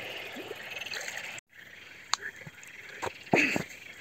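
Frogs calling faintly in short croaks along a reedy shore at night, with a few sharp clicks. The sound drops out for a moment about a second and a half in.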